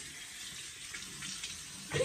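Bathroom sink faucet running, a steady stream of water pouring into the basin.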